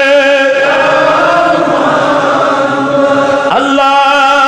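A man chanting in a drawn-out melodic voice, holding long, wavering notes, with a short break about three and a half seconds in. The voice is amplified through a microphone and PA.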